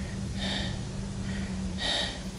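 A woman breathing hard through her open mouth close to the microphone, with two heavy breaths about a second and a half apart.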